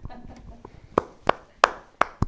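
A few slow, scattered hand claps: about three sharp claps in the second half, roughly a third of a second apart.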